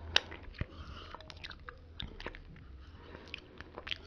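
Close-miked mouth sounds of licking yogurt off a finger: scattered wet lip and tongue clicks, the loudest just after the start.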